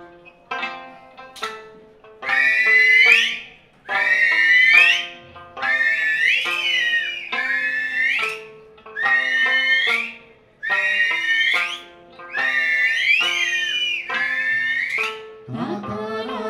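Okinawan Eisa music played over a sound system: short plucked sanshin notes under a high, sliding melody line that repeats in short phrases, about one every second and a half or so, with brief breaks between them.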